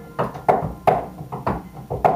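Upright piano played quietly: a string of about eight short single notes, each struck and fading quickly, between fuller held chords.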